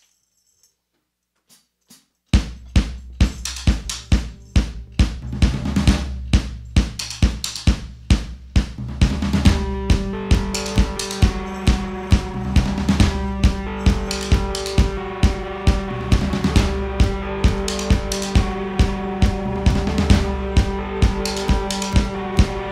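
A live rock band starts a song: after about two seconds of near silence the drum kit comes in suddenly with a steady beat of about two hits a second, and around nine seconds in electric guitar and other instruments join with held notes.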